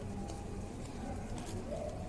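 Faint bird cooing, two short low calls, one early and one near the end, over a steady low background hum.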